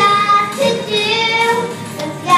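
Two young girls singing together into a stage microphone, holding notes of about half a second each that slide in pitch.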